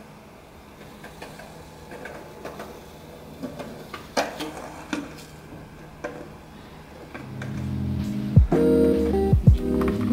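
Steady low hum of small computer fans with light rustles and clicks from foam being handled and pushed through a hot nichrome wire. Background guitar music comes in about seven seconds in and is the loudest sound.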